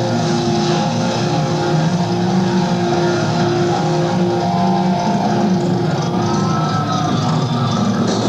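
Live power metal band music: distorted electric guitars holding long, sustained chords at a steady, loud level.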